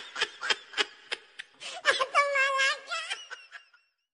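Someone laughing in quick repeated bursts that grow fainter, with one drawn-out wavering laugh about two seconds in, dying away before the end.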